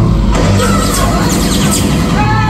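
Steady low drone of a propeller plane's engine mixed with the show's music, played loud over loudspeakers. About a third of a second in, a brighter layer of high, sliding sounds comes in on top.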